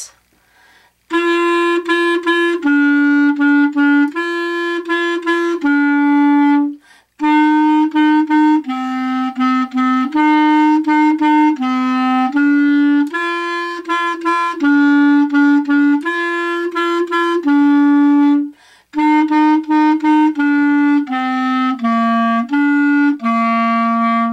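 A clarinet playing a simple beginner melody of short repeated notes on a few neighbouring pitches. The notes start about a second in and run in phrases, with brief breaks for breath about 7 and 19 seconds in.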